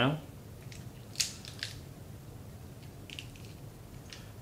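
Teaspoon picking meat out of the shell joints of a cooked crab's body: a few small, sharp clicks and crackles of shell, the clearest about a second in and a short cluster near the end.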